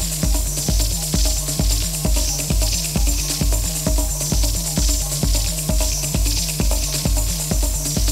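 Deep techno from a DJ mix: a steady kick drum about twice a second under a repeating bass line, with high percussion ticking on top.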